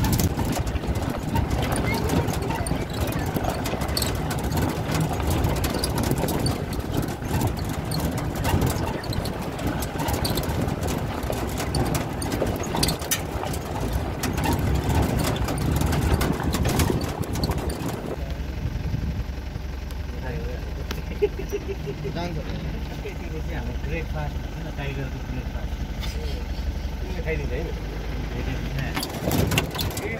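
Open-sided safari jeep running along a dirt track: engine noise with rattling and wind rush. About two-thirds of the way through, the rattle and rush drop away, leaving a steadier low engine hum.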